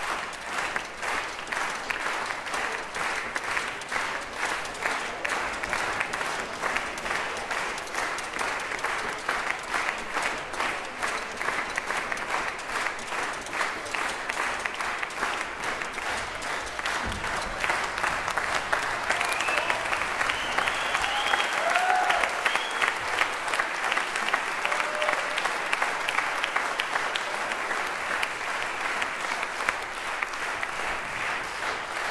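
A concert audience applauding, a dense, steady clapping that fills the hall. A few brief calls rise above it about twenty seconds in.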